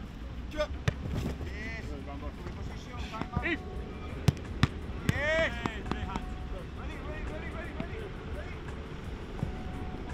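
Footballs being struck and caught in a goalkeeper drill: a series of sharp thuds, the loudest two in quick succession about four seconds in, with short shouted calls in between.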